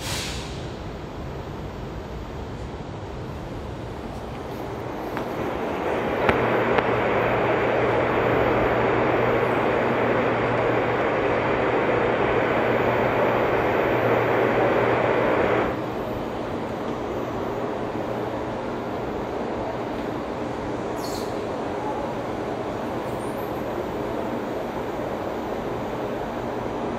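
Train noise in an underground railway station: a steady rushing, rumbling noise with a low hum builds over a couple of seconds, holds for about ten seconds, then stops abruptly, leaving a quieter steady background.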